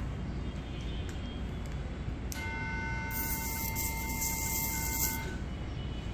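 A steady low background rumble, and a little over two seconds in a sustained horn-like tone of several steady pitches that holds for about three seconds, then stops.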